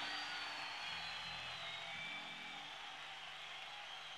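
Steady hiss of concert-hall audience noise with a faint high whistle-like tone, and a few soft, low held notes from the band's instruments before the song begins.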